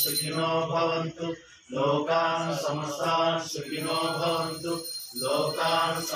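Devotional aarti hymn chanted in sung phrases with repeated calls of "jai", broken by a short pause about one and a half seconds in.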